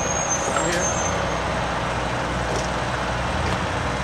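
Street traffic noise with a motor vehicle's engine running nearby, steady throughout; a thin high squeal fades away in the first second.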